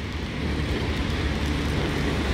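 Street traffic on a wet road: a steady low rumble of passing cars' tyres and engines, growing slightly louder.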